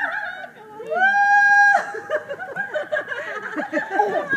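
A high voice calls a long 'wheee' that rises and is then held for nearly a second, followed by quick short vocal sounds like giggling and cooing.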